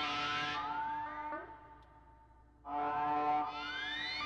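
Improvised electronic music from a synthesizer: held tones layered with rising pitch sweeps. The phrase fades out about a second in, and after a short lull a new phrase of sweeps begins near three seconds.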